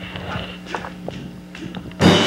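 A few irregular taps of footsteps on a hard stage floor, over a low steady hum.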